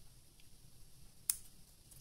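One sharp metallic click from small craft scissors about a second and a third in, with a faint tick earlier, over quiet room tone.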